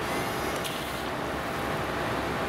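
Headlight washer jets of a 2006 Maybach 57S spraying water over the headlight and onto the hood: a steady hiss of spray.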